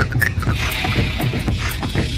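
Live-looped music built from layered beatboxed mouth percussion: a steady rhythm of clicks over low pulses, with an airy, hissing layer coming in about half a second in.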